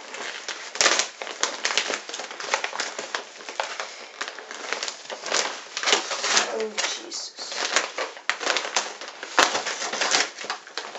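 Plastic postal mailer bag crinkling and tearing as it is pulled open by hand, a continuous run of irregular crackles and rips, with a sharp click about a second in and another near the end.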